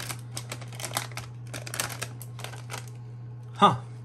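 A foil-lined potato chip bag crinkling and crackling as it is handled and opened, in quick irregular bursts that stop about three seconds in.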